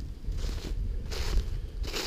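Footsteps of a person walking through a thin layer of snow over dry leaf litter, a few uneven steps.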